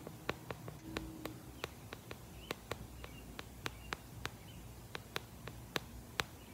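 Fingertips tapping and patting on the camera lens: a run of short, sharp clicks at an uneven pace of roughly three a second, as if eyeshadow were being patted onto an eyelid.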